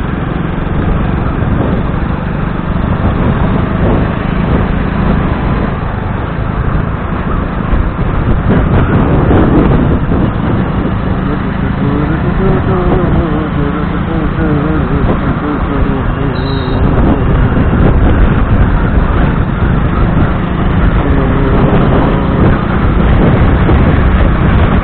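Heavy wind rushing over the microphone together with the engine and road noise of a moving motorcycle in traffic, steady and loud.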